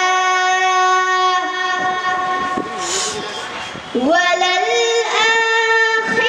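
A boy's voice chanting Quran recitation (qirat) into a microphone in long, drawn-out melodic notes. One note is held through the first second and a half, there is a short breathy break around the middle, and a new held phrase begins about four seconds in.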